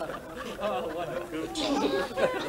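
Low murmur of several voices: students chattering quietly in a classroom.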